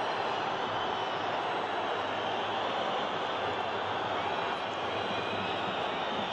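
Steady, even crowd noise from a football stadium audience.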